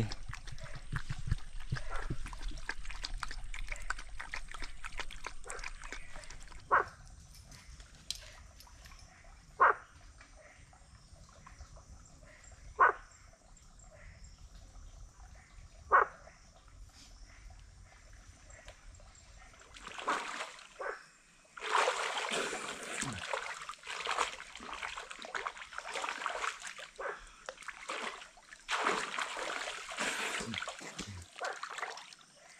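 A dog barks four times, about three seconds apart, after some rustling at the start. From about two-thirds of the way through, water splashes and sloshes as a person wades and swims in a stream pool.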